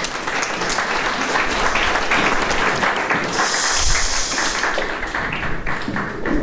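Audience applauding, the clapping easing off near the end.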